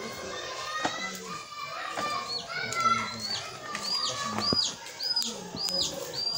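Children's voices in the background, then a bird repeating one short, high call about twice a second from about halfway through.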